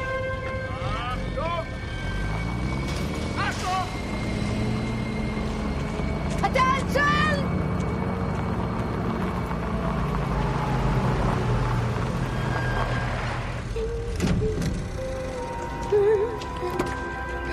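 A car's engine running low and steady as the car drives slowly in, cutting out shortly before the end, with several short shouted voice calls over it early on.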